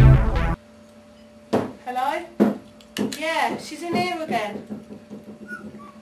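Electronic music cuts off abruptly about half a second in. After a short lull, people's voices talk in a small room over a faint steady hum.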